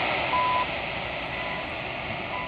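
CHU Canada time signal on 7850 kHz, received on a Tecsun H-501x shortwave radio: short beeping second ticks, one each second, over steady shortwave static. The second tick comes in weaker than the first as the signal fades.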